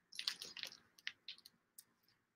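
Faint, soft clicks of a strand of flat white disc beads being handled and held against the neck, the beads knocking lightly together several times in the first second and a half.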